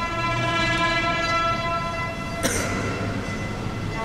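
Live concert music: a steady chord of several held notes, with a sharp struck attack about two and a half seconds in.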